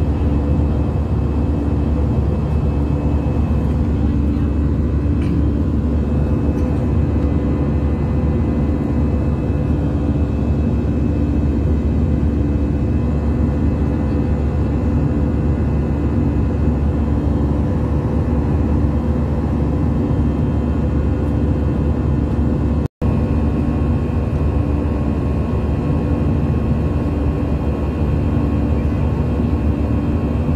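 Airliner cabin noise in flight: a steady, loud drone of engines and airflow with a few steady hums in it.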